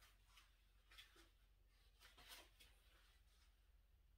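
Near silence, with a few faint, soft scrapes as a handheld paint spreader is drawn through wet acrylic paint on canvas.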